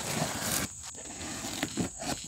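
A knife slitting the packing tape along the top seam of a cardboard box: a scratchy tearing sound, strongest in the first second, then a couple of light clicks as the box is handled.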